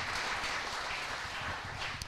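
Audience applauding, a dense patter of many hands clapping that slowly thins out toward the end.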